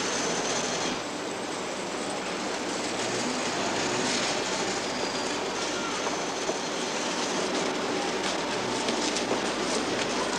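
Steady outdoor noise of a busy street and building site: a dense, even rumble and hiss that keeps up without a break.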